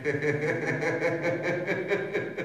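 A man laughing in a long run of quick, evenly spaced laughs.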